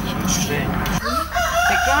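A rooster crowing about a second in, a pitched call that bends up and down.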